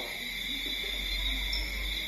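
Night insects chirring steadily at two high pitches, with a low hum underneath.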